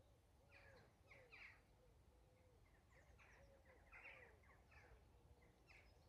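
Near silence with faint bird chirps: short, high, falling notes coming a few at a time throughout.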